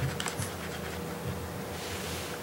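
A few light clicks and taps from a plastic cup being jiggled by its rim on a tabletop, in the first half second, over a low steady hum.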